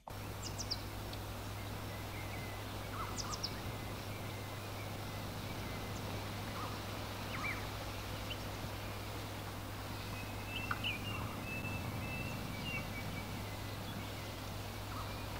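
Steady background hiss with a low hum, and small birds chirping now and then, with a longer twittering call near the end.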